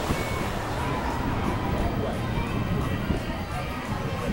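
Busy amusement-park background: crowd voices and music over a steady low rumble, with no single sound standing out.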